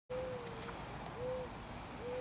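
Dove cooing: two low coos, the first longer and slightly falling, the second shorter and rising.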